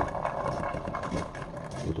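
Soaked soybeans being pushed by hand from a wire-mesh strainer into a metal pot: a soft, continuous rustle with a few light clicks, over a steady low hum.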